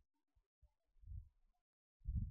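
Near silence, with a few faint low keyboard keystrokes about a second in.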